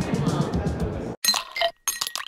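Background music with a last word of speech, cut off suddenly about a second in, followed by a short, bright clinking, chiming sound effect: the sting of an animated logo intro.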